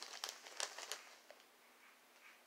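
Clear plastic zip-top bag crinkling as it is pulled open and handled, a quick run of short crackles for about the first second.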